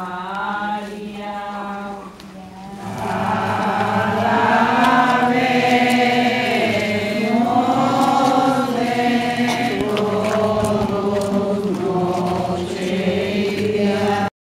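A group of procession walkers singing a devotional hymn together in unison, with long held notes. The singing dips briefly about two seconds in, then comes back fuller and louder.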